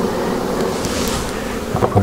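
Honeybees humming steadily over an open hive, with a brief scrape about a second in and a couple of light wooden knocks near the end as frames are pushed along the hive box.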